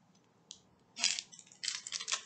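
Small diamond-painting drills clinking and rattling inside a small plastic bag as it is handled and set down: one light click about half a second in, then short bursts of rattling from about a second in.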